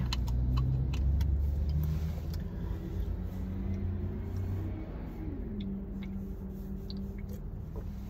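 Car engine running steadily, heard from inside the cabin, its hum gliding down a little to a lower steady pitch about five seconds in. Faint small clicks and sips come from drinking from a can.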